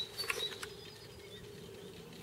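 Quiet background: a faint steady hum with a few light clicks near the start.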